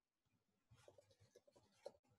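Faint computer keyboard typing: a quick run of soft key presses in the second half, as a file name is typed.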